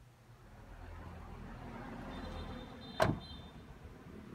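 A low vehicle rumble builds over the first few seconds, then a single sharp metallic bang with a brief ring about three seconds in.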